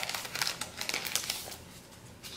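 Clear plastic sleeves and sticker sheets crinkling and rustling as they are handled, an irregular run of small crackles that thins out over the last half second.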